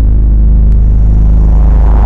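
Loud, steady, deep bass rumble of a cinematic trailer soundtrack, with a faint tick about three-quarters of a second in.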